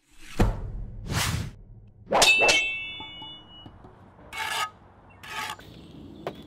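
Intro sound effects: two whooshes, then a loud metallic clang that rings for about a second, followed by two shorter whooshes.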